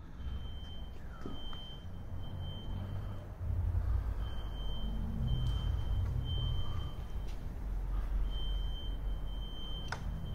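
Electronic alarm beeping repeatedly in a row of long, high beeps, with short gaps between groups, over a low rumbling drone that grows louder about three and a half seconds in.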